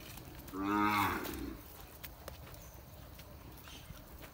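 Cow mooing once: a single call of about a second that drops in pitch as it ends, followed by a few faint clicks.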